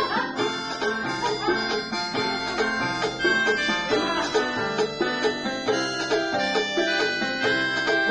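Electronic keyboard organ played with both hands: a lively melody of quick notes over a low bass pattern that repeats at an even beat.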